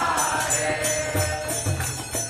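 Devotional music: a voice chanting a Sanskrit mantra, holding a note that falls at the start, over jingling metal percussion at about four strokes a second and low drum strokes.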